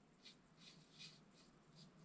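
Faint, soft strokes of a paintbrush brushing paint onto a sculpture armature's torso, about two or three strokes a second.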